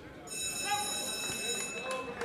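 Ringside bell ringing steadily for about a second and a half, then stopping: the bell signalling the end of the bout. Voices from the crowd are heard under it.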